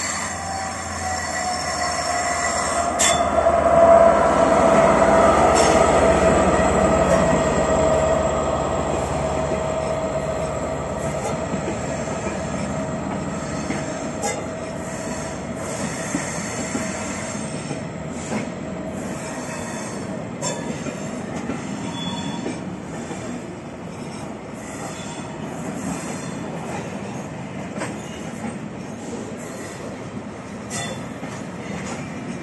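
Class 67 diesel locomotive passing slowly, loudest a few seconds in, then a rake of Pullman coaches rolling by with a wheel squeal that falls slightly in pitch, and scattered clicks from wheels over the rail joints.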